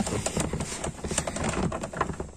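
Irregular small clicks and light knocks as a Runner aluminium gear-lever base is handled by hand and set in place on a ribbed rubber floor mat.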